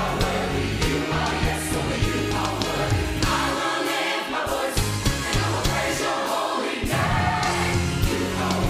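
Gospel church choir singing a worship song full-voiced, backed by a band with electric bass guitar. The bass drops out briefly twice midway.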